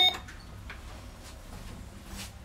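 A single short electronic beep from the modernised KONE ASEA Graham hydraulic elevator's controls at the very start, over a low steady hum.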